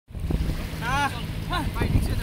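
Wind rumbling on the microphone at the water's edge, with a man's voice calling out briefly twice.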